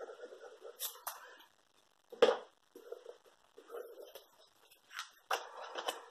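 Paper and card handled on a craft mat: faint rustling with several soft taps and clicks, the sharpest about two seconds in.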